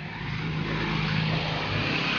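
An SUV driving past close by on the road, its engine and tyre noise swelling up and staying loud.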